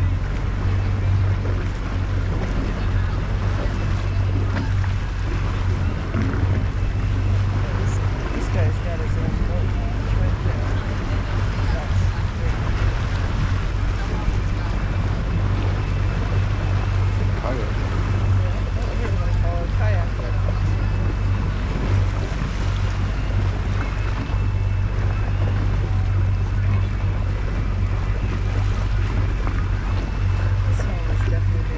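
Boat motor running steadily, a constant low hum, with wind buffeting the microphone and water washing along the hull.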